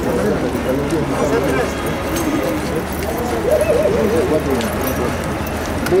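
Indistinct men's voices talking in the background over a steady low rumble.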